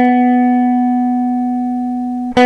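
Les Paul-style electric guitar with humbucking pickups holding one picked note that rings on and fades slowly.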